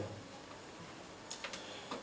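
Quiet room tone in a pause between spoken phrases, with a couple of faint short clicks about one and a half seconds in.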